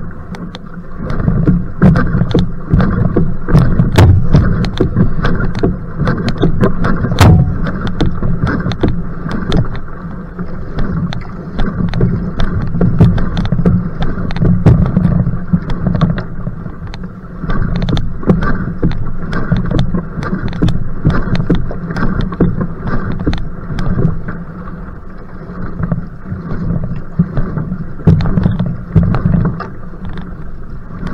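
Water rushing and splashing around a va'a outrigger canoe under hard paddle strokes, with a strong headwind buffeting the boat-mounted microphone in a heavy low rumble.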